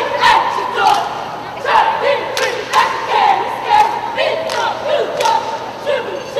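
Cheerleading squad shouting a chant in unison, voices held on long shouted notes, cut through by sharp hits that keep time about twice a second.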